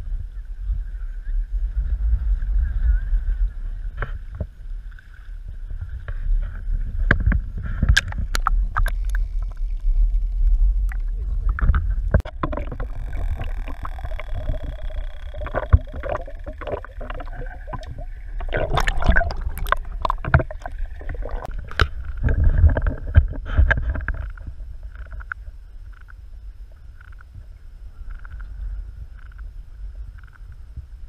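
Shallow seawater sloshing and splashing around a camera held at the surface, which dips underwater partway through. There is a steady low rumble, with sharp splashes and clicks in clusters, and it is quieter near the end.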